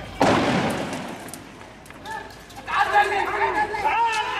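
A sudden loud bang about a quarter second in that dies away over about a second, then raised voices shouting from near the three-second mark.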